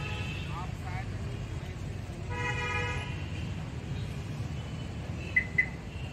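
A steady low outdoor rumble with a vehicle horn sounding once for under a second near the middle. Two short high chirps come close together near the end and are the loudest sounds.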